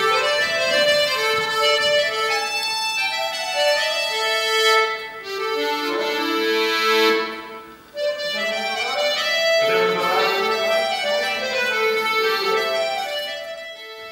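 Accordion playing a traditional Irish melody in held notes, with a short break about eight seconds in.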